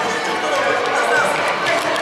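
Sports-hall hubbub: many children's and adults' voices calling and chattering at once, echoing in the large hall, with young players' running footsteps on the court floor.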